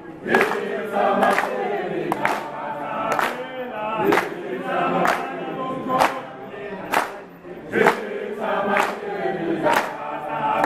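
A crowd of many voices singing together in unison, with a sharp clap in time about once a second.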